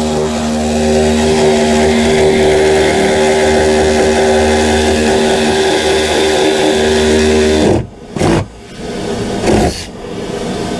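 Handheld power saw cutting into the wood framing of a ceiling opening, running steadily for nearly eight seconds and then stopping suddenly. A few short knocks and handling sounds follow.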